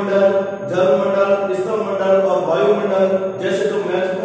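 A man's voice chanting in drawn-out, steady-pitched phrases of about a second each.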